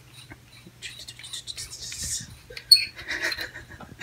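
Hookah hose's ice-pack tube being twisted and unscrewed by hand: scraping and rubbing of the threaded parts, with a sharp squeaky click about two and three-quarter seconds in, over a low steady hum.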